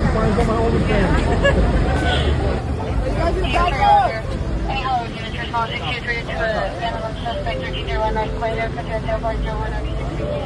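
Several people talking at once, indistinct, over a steady low engine rumble.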